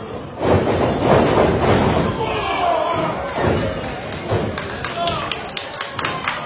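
Heavy thuds of wrestlers' bodies hitting the ring canvas, several over a few seconds, over a live crowd shouting and cheering that surges loudly about half a second in.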